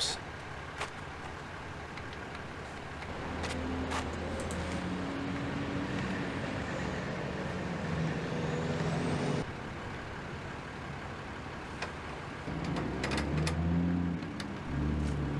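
Vehicle engines running in the background, a low steady hum with a few low tones, which cuts off abruptly about nine seconds in and comes back near the end.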